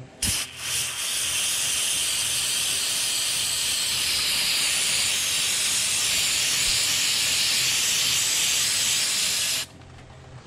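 Aerosol can of brake cleaner spraying: a couple of short spurts, then one long continuous hiss of about eight and a half seconds that cuts off suddenly near the end.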